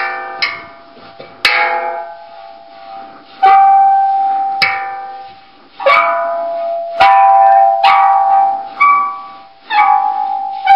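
Metal water gong struck by hand about nine times. Each stroke rings out as a clear metallic note with overtones that fades away, and a few notes hold steady for a moment before they fade.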